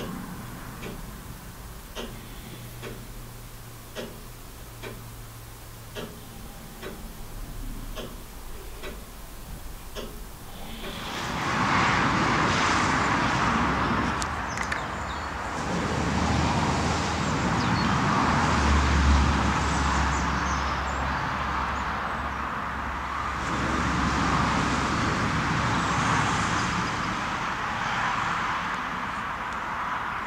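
A clock ticking about once a second in a quiet room. About eleven seconds in it gives way to a louder outdoor rushing noise with a low rumble, which swells and fades a few times, like road traffic passing.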